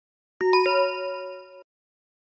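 A two-note chime sound effect: two bright ding notes a quarter second apart, ringing for about a second and then cutting off suddenly.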